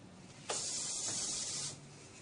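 A hiss that starts suddenly about half a second in and cuts off just over a second later.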